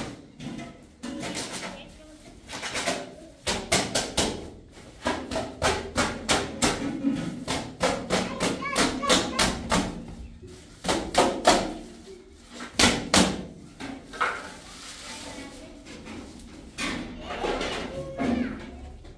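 Hand tool scraping and knocking as dry plaster powder is scooped out of a sack, with quick runs of sharp knocks through the middle, loudest a little after halfway, then a softer rustling hiss near the end.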